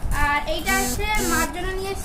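A voice singing a short melodic phrase, holding notes and gliding between them.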